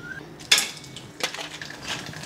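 Dried snack pieces dropped into hot oil in a steel kadai: a sharp sizzle about half a second in, then steady crackling and spattering as they fry and puff up.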